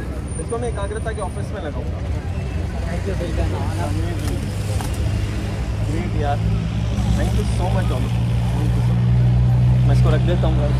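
A motor vehicle engine running at idle close by: a steady low hum that grows gradually louder, with people talking quietly over it.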